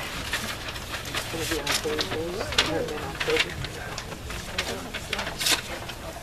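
Quiet, indistinct voices talking in the background, with a few short, sharp rustles or clicks.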